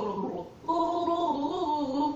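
A woman gargling water while humming a song's melody, giving a bubbling, pitched tune in two phrases with a short break about half a second in.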